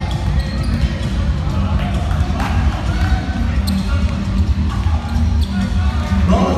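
Live basketball game sound in a large, nearly empty hall: the ball bouncing on the hardwood, with players' voices calling out over a steady low rumble.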